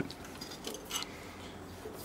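A few light clicks and taps, mostly in the first second, from hands handling parts inside a dismantled industrial variable-frequency drive.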